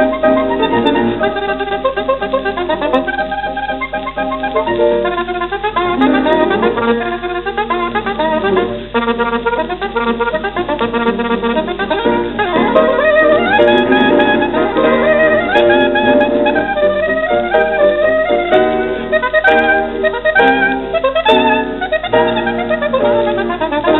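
Solo saxophone playing fast virtuoso runs over piano accompaniment, from an old 78 rpm record with a dull, narrow sound.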